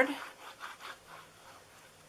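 Faint, scratchy rubbing of a liquid glue bottle's tip drawn across cardstock as wet glue is squiggled on, in short uneven strokes that die away after about a second.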